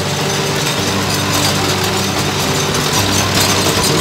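A motor-driven machine running steadily: a constant low hum under a dense, even mechanical noise.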